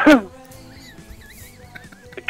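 A short, high burst of laughter that falls in pitch, over faint background music.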